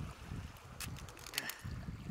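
Shallow seawater lapping and washing around rocks, with low wind rumble on the microphone and a couple of short splashes or drips near the middle.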